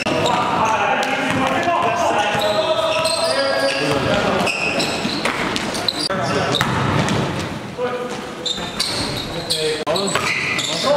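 Sounds of a basketball game in an echoing gymnasium: indistinct, overlapping players' voices and the ball bouncing on the hardwood floor.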